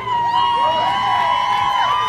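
Female singers holding a long, high note in harmony with no beat under it, while the audience cheers with rising and falling whoops.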